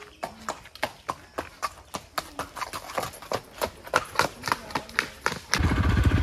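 A horse's hooves clip-clopping on brick paving at a walk, about three to four hoof strikes a second. Near the end a louder steady low rumble takes over.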